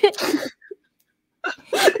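A woman laughing in a short, breathy burst that stops about half a second in. After a brief silence, a woman starts speaking near the end.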